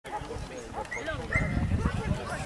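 A dog barking over people talking, with a steady low rumble underneath.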